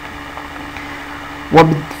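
Pause in a man's lecture: only a faint steady background hum, then his voice starts again about one and a half seconds in.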